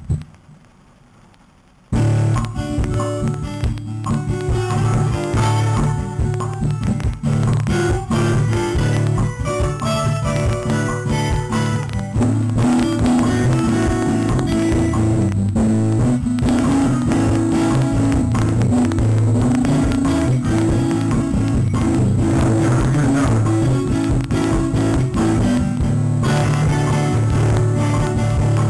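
Pre-recorded acoustic guitar loop played back from a Boss RC-2 Loop Station pedal, starting about two seconds in after a brief near-quiet pause. About twelve seconds in the music gets fuller and more even as live strummed guitar joins the loop.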